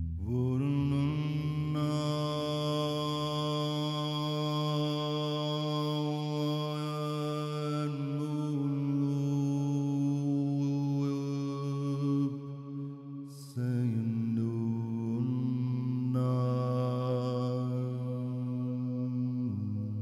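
A man's voice chanting wordless, long held notes in a meditative mantra style, rich in overtones. One note is held for about thirteen seconds, then after a brief dip a second note is held for about six seconds.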